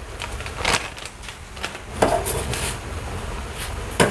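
A pot of soup boiling on a gas burner, with scattered light crackles and clicks as dried fish skin is crumbled in by hand; the loudest click comes about two seconds in.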